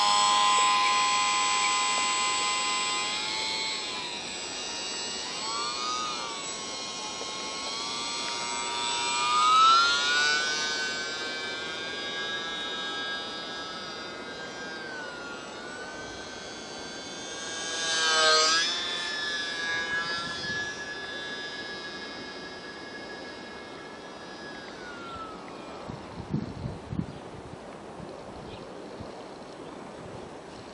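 Small brushless electric motor and propeller of a UMX micro J-3 Cub RC plane, whining at high power from the start, its pitch rising and falling with the throttle. It swells loudly as the plane passes close, about ten seconds in and again near eighteen seconds. The sound then fades into the distance, with a few low thumps near the end.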